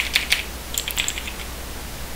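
Computer keyboard being typed on: about half a dozen quick key clicks in the first second, then the typing stops.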